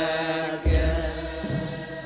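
Ethiopian Orthodox aqwaqwam liturgical chant: a group of voices holds a slow, sustained chant. About two-thirds of a second in comes one deep drum stroke, together with a bright jingle of shaken sistra.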